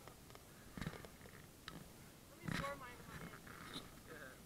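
Faint voices in the background, the clearest about two and a half seconds in, with a few light clicks.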